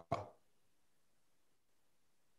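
A short clipped end of a spoken word right at the start, then near silence: a pause in a speaker's talk over a video call.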